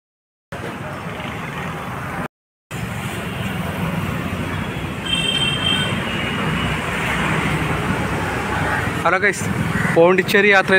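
Street traffic noise: a steady hum of passing vehicles. It is cut by two short dead-silent gaps in the first three seconds, and a brief high tone sounds about five seconds in.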